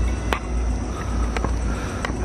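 Steady low rumbling noise on a handheld camera's microphone while walking outdoors, with a faint steady high tone and two faint clicks about a second apart.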